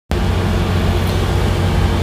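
Diesel engine running steadily, a low even drone with a strong hum.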